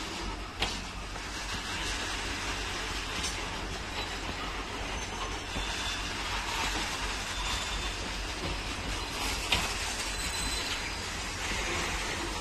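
Freight train of covered goods wagons rolling past: a steady rumble of steel wheels on rail, with a sharp click about half a second in and another near the end, and a few faint brief squeals from the wheels.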